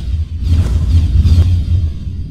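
Cinematic intro music and sound design: a loud, deep bass drone with whooshing swells about half a second in and again near one and a half seconds.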